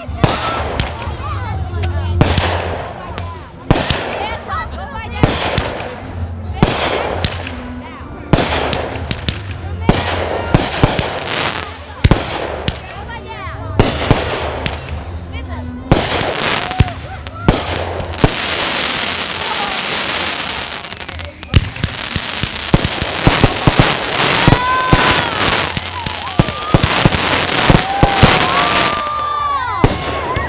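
Fireworks display: aerial shells launching and bursting in a steady series of sharp bangs. From a little past halfway there is a dense stretch of crackling, and near the end short whistling tones rise and fall over the bangs.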